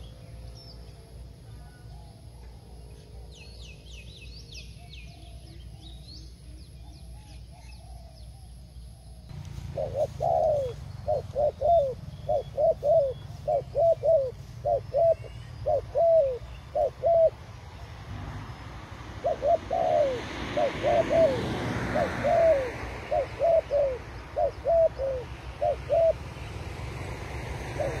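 Spotted doves cooing: a run of short coos, each bending downward, about two a second, starting about ten seconds in, pausing around seventeen seconds and resuming around nineteen. Faint high chirps from a small bird come earlier, and a steady hiss sits behind the second run of coos.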